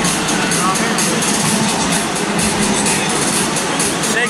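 Dance music playing over an arena's PA system with a loud, steady crowd din of many voices.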